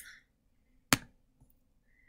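A single sharp computer-mouse click, about a second in.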